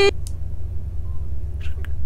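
A low steady hum, the background noise of an open microphone line on a video call, with a faint voice near the end.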